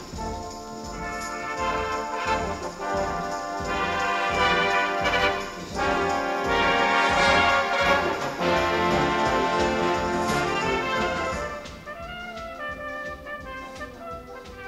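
A full brass band plays a loud, full passage with many instruments together. About twelve seconds in it drops to a quieter, lighter passage.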